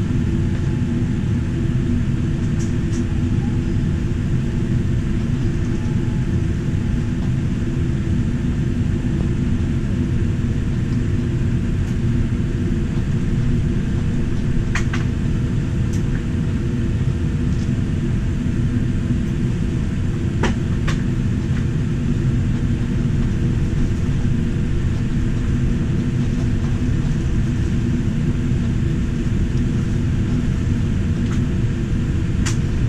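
Steady low rumble heard inside the cabin of a Boeing 787-9 taxiing on its GEnx-1B engines at low thrust, with a few faint clicks around the middle.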